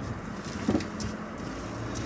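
Steady engine and road noise heard inside a vehicle's cabin as it drives slowly.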